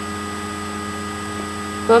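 Steady electrical hum made of several fixed tones over a constant hiss, recording noise from the equipment; a voice begins just before the end.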